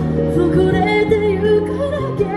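A singer's amplified voice singing a song over backing music with steady low bass notes; the sung line comes in about half a second in, wavering on held notes.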